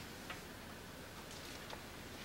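Quiet classroom room tone, a steady hiss, with two small sharp clicks about a second and a half apart.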